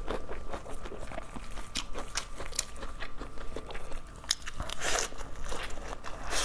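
Close-miked eating: chewing with many small wet mouth clicks, then a louder crisp crunch near the end as a bite of lettuce is taken.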